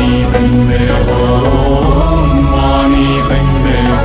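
Background music: a sung mantra chant over a steady low drone.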